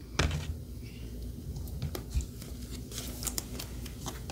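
Hands handling trading cards and a clear plastic card holder: light rustling with scattered short clicks and taps.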